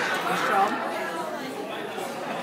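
Overlapping voices of people talking: general chatter in a restaurant dining room.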